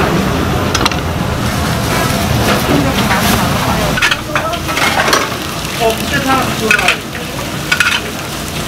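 Steady sizzling of food frying on a hot iron griddle, with scattered light clicks of dishes and utensils being handled.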